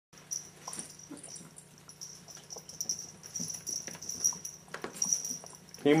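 A cat scrabbling and pouncing after a wand toy on carpet: scattered light ticks and rustles, with a faint high ringing that comes and goes.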